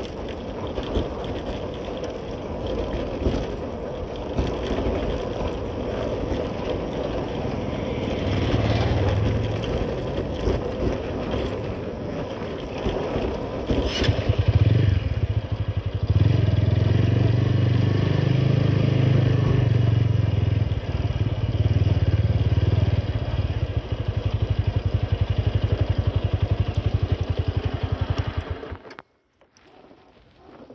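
Motorcycle engine running as the bike is ridden, with tyre crunch on a gravel road in the first half. The engine gets louder about halfway through and runs steadily, then the sound cuts off suddenly near the end.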